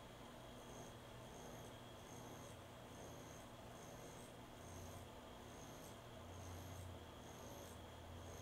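Pen-style rotary tattoo machine turned down to about four and a half volts, running slowly with a faint steady low hum, while the needle scratches faintly over practice skin in shading strokes.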